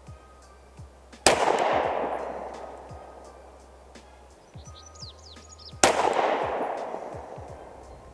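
Two pistol shots from a 9mm Sig Sauer P365XL, about four and a half seconds apart, firing 124-grain hollow-point defensive rounds. Each sharp crack is followed by a long echo that dies away over about two seconds.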